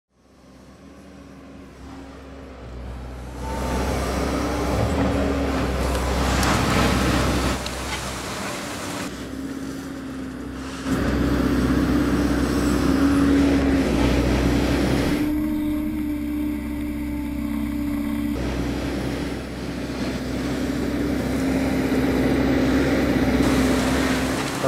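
Hyundai 145CR-9 tracked excavator's diesel engine running under load with a steady droning tone, fading in over the first few seconds. Its sound shifts several times as it works.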